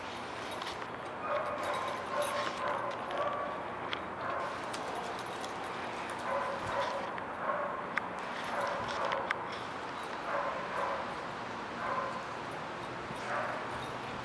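Dogs barking repeatedly in short, pitched bursts while playing, starting about a second in and carrying on to near the end.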